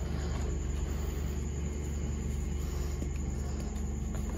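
Hands pressing and rubbing through crumbled gym chalk powder, a soft powdery rustle with a few faint ticks, over a steady low hum.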